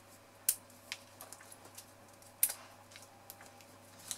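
A few light taps and clicks of hands working small card pieces onto a card tag on a craft mat, with two sharper clicks about half a second and two and a half seconds in.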